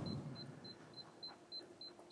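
Faint, high-pitched electronic beeping: short beeps, all at the same pitch, repeating about three times a second, over quiet room tone.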